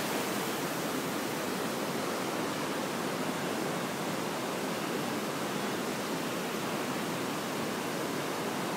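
Steady rushing of white water from the Potomac River's rapids and falls at Great Falls, an even, unbroken noise.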